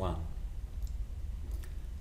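Two faint clicks from a computer being worked to edit text, one a little under a second in and one near the end, over a low steady hum.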